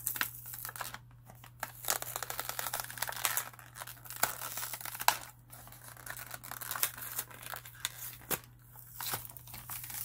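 Cardboard backing card of a toy blister pack being torn and peeled away from its plastic blister. It comes as irregular stretches of ripping and crinkling, broken by sharp clicks.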